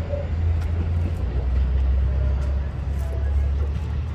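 Low, steady rumble of the Asoboy! diesel train's engines as it pulls away down the line, easing off slightly toward the end. Just at the start, the last strokes of a level-crossing bell stop.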